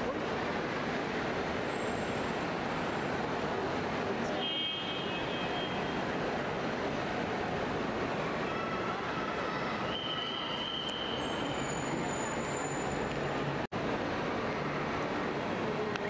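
Steady noisy din of traffic and scattered voices, with a few faint brief tones rising out of it. The sound drops out for an instant near the end.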